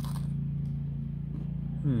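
A steady low mechanical hum, like a motor running, with a short crunch at the start as a cracker sandwich is bitten into. A hummed "mm-hmm" comes at the very end.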